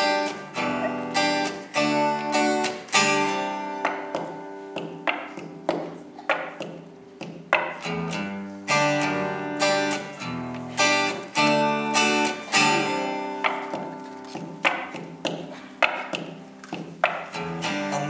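Solo acoustic guitar strumming chords in a steady rhythm, an instrumental intro with no singing.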